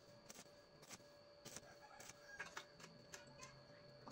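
Faint, irregular crackling of an E6013 stick-welding arc as the rod burns along a bead on steel tube, over a low steady hiss.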